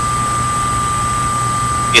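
Steady hiss with a low hum and a thin, constant high whistle: the background noise of a radio broadcast recording, heard between words.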